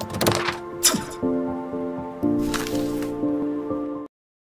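Logo intro jingle: sustained synth chords that change twice, overlaid with whoosh and hit sound effects, cutting off abruptly at the end.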